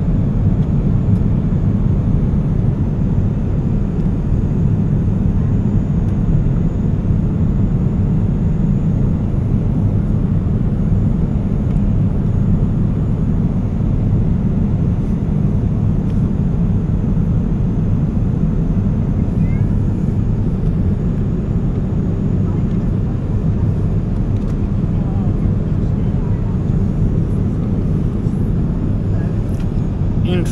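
Steady cabin noise of a Boeing 787 Dreamliner in flight: engine and airflow noise as a constant low rush that does not change.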